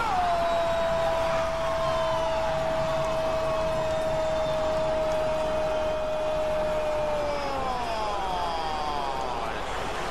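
A man's prolonged goal shout: one long held "gol" that stays on a single pitch for about seven seconds and then falls away near the end, over steady stadium crowd noise.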